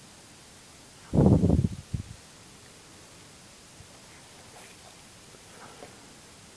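Handling noise: the camera or phone microphone is knocked and rubbed in a loud rough burst about a second in, with a shorter bump just after.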